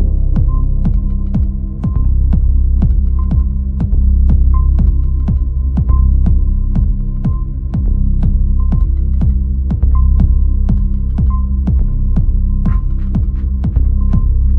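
Minimal techno track: a fast, even electronic kick pulse, each hit falling in pitch, over a loud, deep sustained bass drone, with a short high blip repeating about every second.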